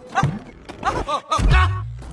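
Short pitched yelps and grunts from a man tumbling inside an inflatable bubble ball, over film music, with a dull low thud about one and a half seconds in.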